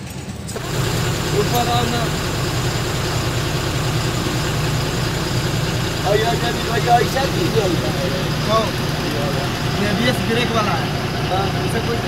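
A truck's diesel engine idling steadily, heard from inside the cab, with faint voices in the background.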